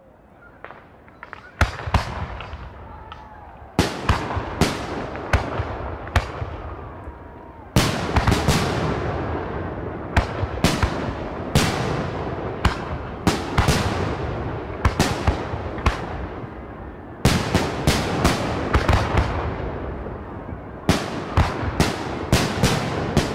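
Fireworks going off: a long run of sharp bangs and reports, often under a second apart, over a continuous crackle. Bigger volleys start about 2, 4, 8, 17 and 21 seconds in.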